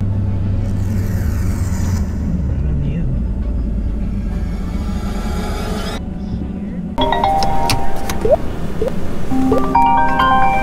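Steady road and engine rumble inside a moving vehicle's cabin. About seven seconds in, a chiming phone ringtone starts playing through the vehicle's speakers for an incoming call, louder than the road noise.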